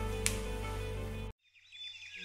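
Steady background music with a low hum that cuts off suddenly about two-thirds of the way in. After a brief silence, faint high chirps begin near the end.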